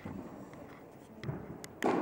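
Quiet room sound with a few faint, sharp clicks, one right at the start and another near the end.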